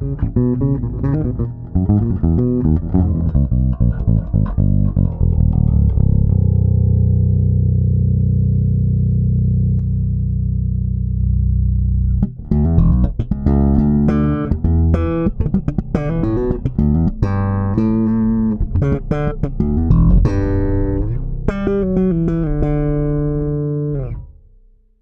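Pedulla Rapture 5 electric bass played solo with the fingers: quick runs of notes, a low chord held and left ringing for several seconds around the middle, then more fast, brighter notes, stopping at the end.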